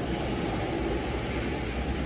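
Steady low rumble with a lighter hiss over it, the even running noise of a machine or vehicle in the background.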